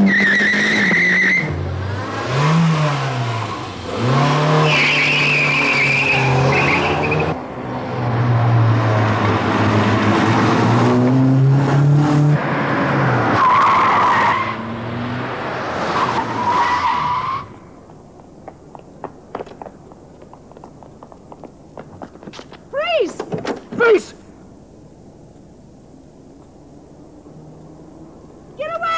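Car engine revving hard with repeated tyre squeals as the car is driven fast and swerves. About two-thirds of the way through, the engine noise drops off abruptly.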